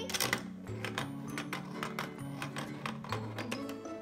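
Irregular plastic clicks and rattles, a few a second, from the Mouse Trap board game's plastic contraption as its crank is turned to set off the trap, over background music.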